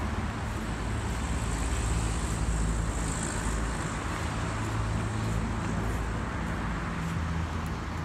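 Road traffic noise: a steady wash of passing cars with a low engine hum, swelling a little about two to three seconds in.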